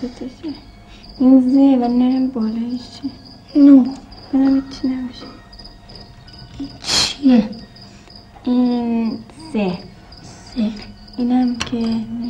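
Steady insect chirping, a high note pulsing several times a second, under children's voices speaking in short phrases.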